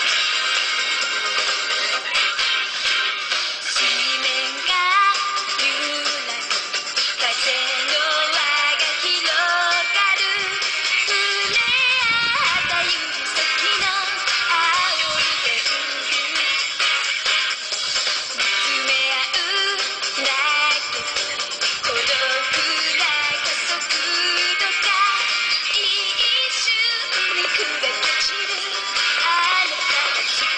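A J-pop song with a female singer playing through a MacBook's built-in laptop speakers, thin with almost no bass. A few brief low thumps cut in around the middle, about twelve, fifteen and twenty-two seconds in: the random popping of the Realtek sound driver under Windows in Boot Camp.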